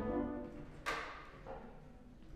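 Instruments from a small jazz combo: a held pitched note, then a single sharp cymbal or drum hit a little under a second in that rings and fades, with a smaller hit after it.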